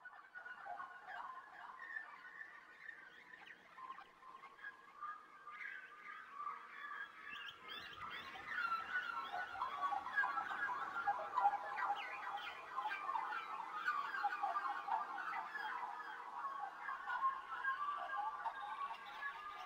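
A dense chorus of many small birds chirping and chattering at once, the chirps overlapping thickly and growing louder about eight seconds in.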